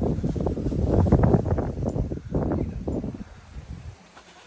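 Wind buffeting the microphone, with rustling, heavy and uneven for about three seconds and then easing off.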